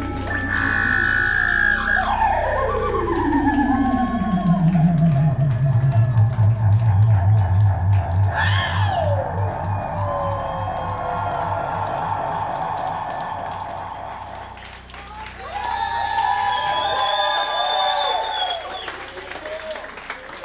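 Electronic-sounding pitch sweeps from the stage of a live band: a long falling glide that sinks into a low, pulsing wobble, a brief swoop about halfway through, then warbling, wavering tones near the end.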